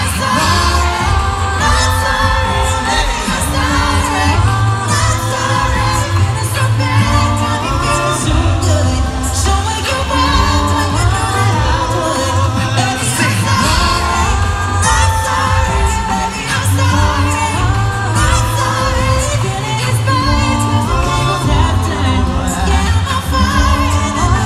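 Live a cappella pop group singing: several voices in harmony over a sung bass line and a beatboxed beat, with a steady rhythm throughout, heard loud through a concert PA.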